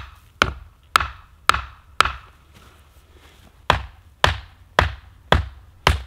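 Sharp strikes on wood in two runs of five, about two a second, each with a short ringing tail, with a pause of about a second and a half between the runs.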